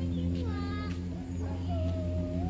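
Short animal calls that glide up and down in pitch, a few in the middle and one longer wavering call near the end, over a steady low hum.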